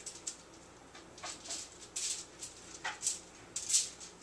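Silicone pastry brush swiping oil across an aluminium-foil-lined baking sheet: a string of short, irregular swishes.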